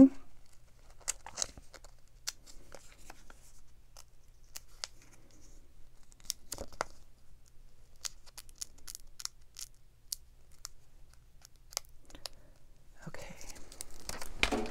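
A clear plastic sticker being peeled off its backing sheet and handled: faint crinkling with scattered small ticks.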